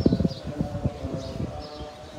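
Small birds chirping in short, repeated high calls. A burst of low knocks and thumps in the first half second is the loudest sound, followed by scattered softer knocks.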